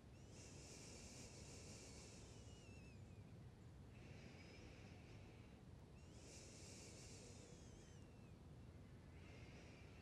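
Near silence: faint outdoor background with a high-pitched call repeating in bursts a second or two long, about every two to three seconds, with a few short falling whistles among them.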